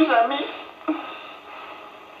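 Speech: a man's voice finishing a short line of film dialogue, followed by a brief vocal sound just before one second in.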